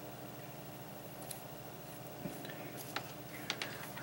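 Quiet room with a few faint, short clicks and puffs as a hand bulb duster is squeezed to blow powder through its extension wand.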